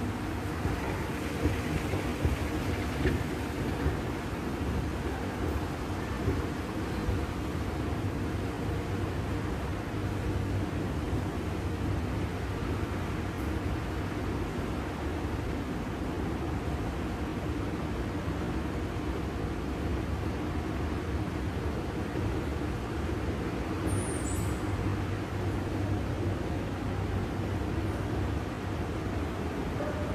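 Moving walkway running with a steady low mechanical hum and rumble. A brief high chirp sounds once, late on.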